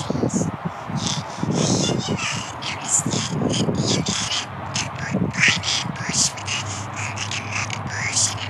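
A harsh, raspy, croaking voice in quick short bursts, like cawing, with no clear words: the gibberish voice of a talking tree.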